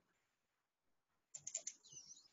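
Near silence, then a quick run of faint computer mouse clicks about a second and a half in, followed by a faint short high chirp near the end.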